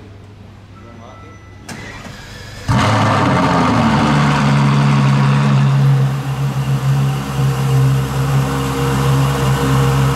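Ferrari LaFerrari Aperta's V12 starting with a sudden loud flare, the revs falling over about a second and settling into a steady idle that wavers a little in its later seconds. A short knock comes just before the start.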